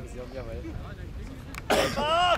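Low chatter of spectators' voices, then near the end a sudden loud, harsh vocal outburst from someone close to the microphone that turns into a short voiced call.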